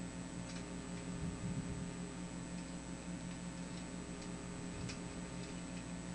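A steady electrical hum with a faint high whine, and a few light, irregularly spaced clicks.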